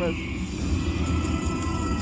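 Buffalo Diamond slot machine's bonus-game sounds over a steady low casino-floor din, with a thin steady electronic tone coming in about a second in as a win is counted up.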